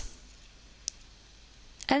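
A single short click of a computer mouse button: the right-click that opens a context menu.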